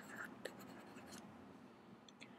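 Faint short scratches and taps of a stylus writing on a tablet, stopping a little past a second in.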